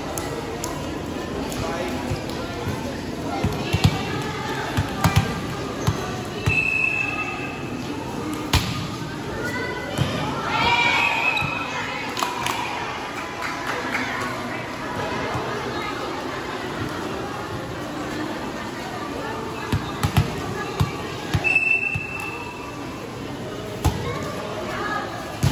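Volleyball rally: sharp slaps of hands and forearms on the ball, over steady spectator chatter and shouts in a large covered hall. A short referee's whistle blast sounds about six seconds in and again near the end.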